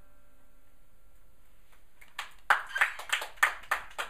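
The last strummed chord of an acoustic guitar rings and dies away, then about two seconds in a pair of hands starts clapping, sharp claps about three a second.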